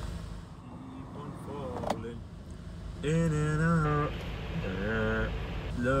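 Steady low hum of a car cabin, with the engine running. From about three seconds in, a voice sings a few drawn-out, wavering notes, ending on the word "love".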